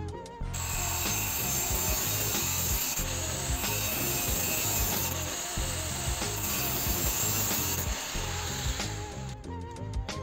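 Angle grinder with a thin cut-off disc cutting through a square steel tube clamped in a bench vise: a steady, harsh metal-cutting noise that starts about half a second in and stops near the end. Background music runs underneath.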